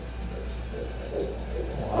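Embryo's heartbeat at a seven-week ultrasound, played through the ultrasound machine's Doppler speaker: a fast, pulsing whoosh over a low steady hum.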